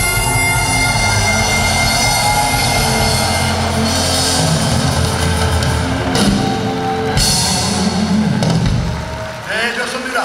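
Harmonica playing a melody with a military rock band of drum kit, electric guitar, bass and keyboard, the music ending about nine seconds in; a voice is heard near the end.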